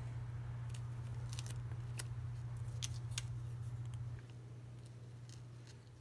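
Light clicks and ticks of stiff paper being handled as die-cut cardstock leaves are tucked behind a paper flower, a few scattered taps in the first three seconds, over a steady low hum that drops away about four seconds in.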